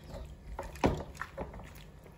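Metal spoon knocking and scraping in an aluminium pot while cooked macaroni is pushed out into a plastic basin: a few soft knocks, the loudest a little under a second in.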